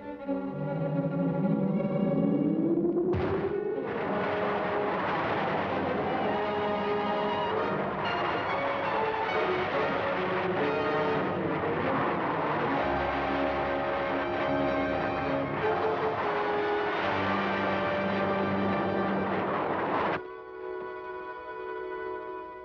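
Dramatic serial score music, with a rising whine about a second in leading into a loud, noisy rocket-pack flight sound effect laid over the music. The rushing sound cuts off suddenly near the end, leaving the music alone.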